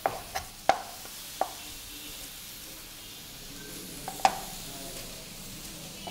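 Knife slicing a tomato on a cutting board: a few sharp knocks in the first second and a half and one more about four seconds in, over a steady sizzle of food cooking on the hot pan.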